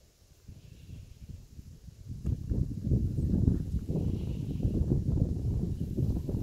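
Low, irregular rumbling and buffeting on the microphone, starting about two seconds in with a light knock and then running on loudly.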